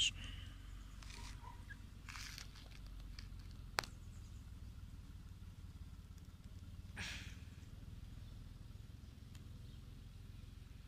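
Faint outdoor ambience: a low, steady rumble with a few soft rustles on dry ground and a single sharp click just before the middle.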